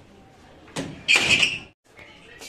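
A door being moved: a short knock, then a louder scraping sound about half a second long that cuts off suddenly.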